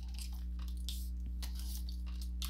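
Light, scattered clicks and rustles of cardstock oracle cards being handled and drawn from a deck, over a steady low electrical hum.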